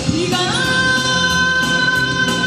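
A woman singing a Korean popular song into a microphone over a backing track, sliding up about half a second in into a long held high note.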